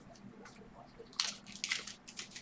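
A trading-card pack's wrapper crinkling and tearing as it is opened by hand, in a run of bursts starting about a second in after faint handling ticks.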